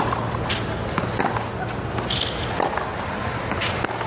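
Sharp knocks of a tennis ball being struck and bounced, about six at irregular spacing, with shoes scuffing on the clay court under a steady low background of the crowd.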